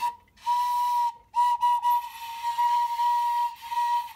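A vintage tin Kirchhof Saxaflute toy wind instrument with a wooden mouthpiece, blown on a single high, breathy note: a short toot, then a long held note that wavers slightly. The old toy still sounds.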